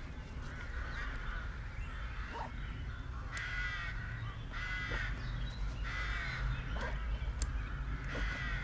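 A crow cawing three times, about a second apart, in the middle of the stretch, over a steady low rumble.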